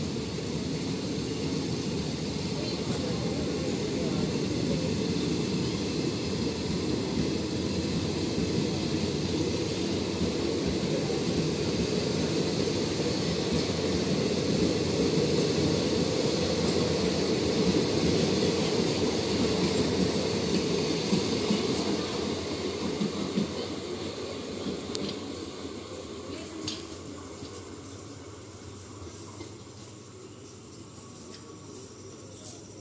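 Passenger train coaches rolling past on the rails as the train departs: a steady rumble and clatter of wheels on track. It grows a little louder, then fades away over the last several seconds as the end of the train moves off.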